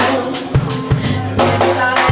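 Live jazz-soul band playing: drum kit with repeated cymbal and snare strokes under pitched piano and horn lines.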